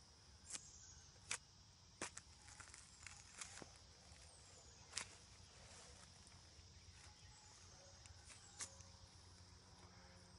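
Near silence: a steady faint high insect drone, with scattered sharp clicks as a knife works at the shoulder of a hanging skinned deer carcass, the loudest click about five seconds in.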